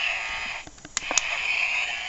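Steady background hiss with two short sharp clicks about a second in, typical of handling noise from a handheld camera.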